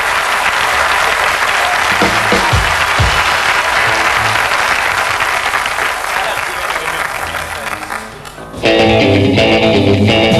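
Studio audience applauding, with a few low plucked notes under it. The applause dies down about eight seconds in, and moments later a rock band with electric guitars starts playing a song.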